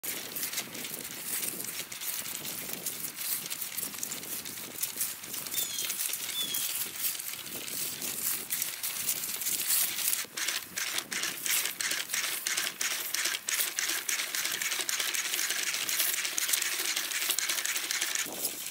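mjbots quad A1 robot dog walking on grass: a fast, irregular run of clicks and taps from its feet and geared leg actuators, turning more even and rhythmic, about three a second, from about halfway.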